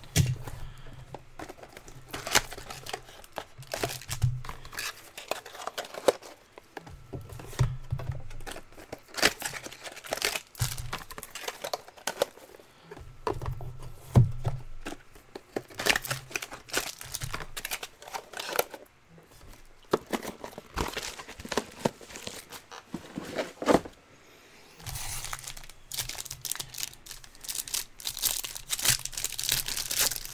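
Plastic shrink-wrap being torn off a sealed trading-card box, then a card pack's plastic wrapper being crinkled and ripped open. The crackling and tearing comes in irregular bursts with short pauses between them.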